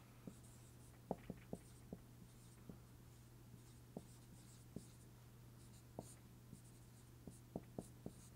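Faint dry-erase marker writing on a whiteboard: soft squeaks and scattered small taps as numbers and letters are written.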